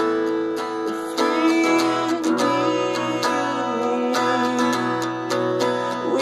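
Acoustic guitar strummed in a steady rhythm, its chords ringing on between the strokes.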